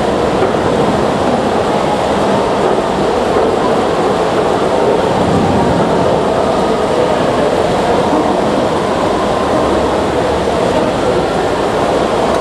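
Heavy downpour of large raindrops: a loud, steady wash of noise that does not let up.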